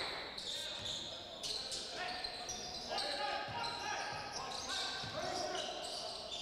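Game sounds on a basketball court: a ball bouncing on the hardwood floor a few times, with short squeaks of sneakers on the court.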